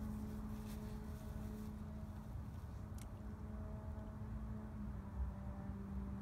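Steady low mechanical hum and rumble with a constant droning tone, and one light click about three seconds in.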